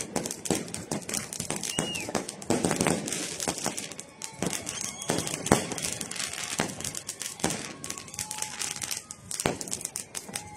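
Fireworks display: a dense, irregular run of bangs and crackling from bursting shells and firecrackers, with a few brief whistles.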